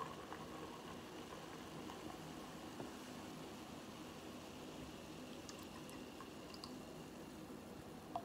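Cherry Coca-Cola poured from an aluminium can into a glass: a faint, steady stream of liquid running into the glass.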